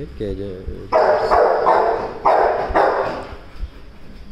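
A dog barking: about five loud barks in quick succession, starting about a second in and ending near the three-second mark.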